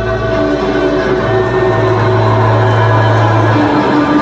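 Rock band playing live through a concert PA: amplified electric guitars and bass holding sustained notes over a deep held bass tone, with little drumming.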